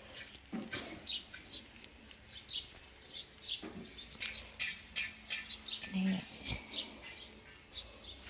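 Small birds chirping repeatedly: short, high, falling chirps, two or three a second.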